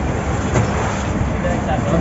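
Fishing boat's engine running steadily, a continuous low rumble.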